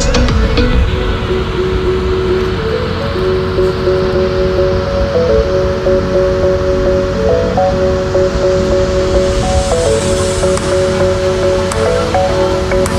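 Background music with a slow melody of long held notes over a steady rushing noise.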